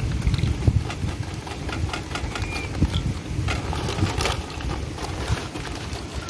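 Opened plastic snack bag of corn snacks being handled: dense crinkling and rattling over a low rumble, with a couple of sharper crackles about three and a half and four seconds in.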